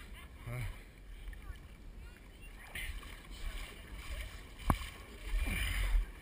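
Faint distant voices, with a single sharp knock about three-quarters of the way through and a low rumble in the last second.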